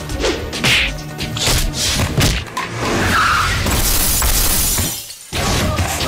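Action-film fight soundtrack: dramatic background music with a rapid run of punch and body-impact hits, then the sound of a car's window glass shattering as a man is thrown against it, in the second half. The sound drops out briefly just before the end.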